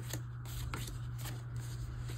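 Glossy photo postcards rustling and sliding against one another and the tabletop as they are spread out by hand, in a series of short soft swishes.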